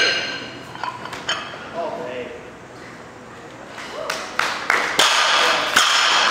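Steel barbell and iron plates clinking and ringing as a loaded bar is lifted in a snatch. Sharp metallic clanks come about four seconds in, followed by a louder ringing rattle near the end.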